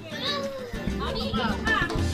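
Background music with a mix of voices, children's among them, talking and calling out over it.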